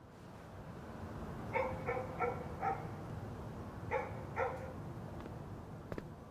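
A dog barking: four short barks in quick succession, then two more a little over a second later, over a steady low background noise.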